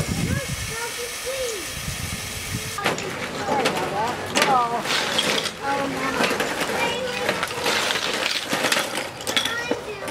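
Seashells clattering and clinking onto a folding tabletop as they are shaken out of a drawstring bag, starting about three seconds in. The quick, irregular clicks keep up, with voices over them.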